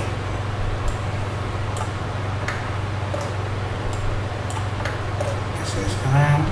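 Irregular sharp clicks of computer input devices as the software is worked, about eight in six seconds, over a steady low hum and hiss.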